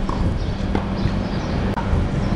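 A tennis ball struck by rackets and bouncing on a hard court during a rally: several short, sharp pocks about half a second apart, over a steady low rumble of wind and handling noise on the microphone.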